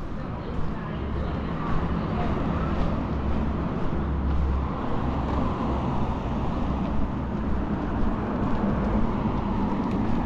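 City street ambience: a steady hum of road traffic, with people's voices nearby.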